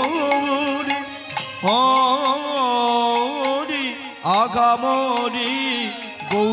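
Bengali kirtan: a man sings devotional chant in long, wavering held notes, accompanied by khol drums, harmonium and small hand cymbals.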